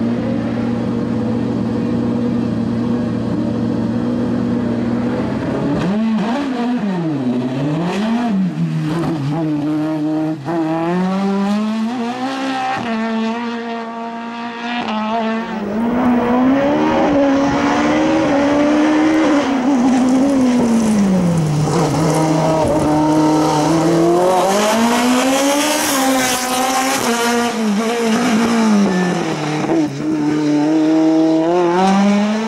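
Sports-prototype race car engine held at steady revs on the start line for the first few seconds, then revving up and falling back over and over as the car accelerates and slows through a slalom of cone chicanes.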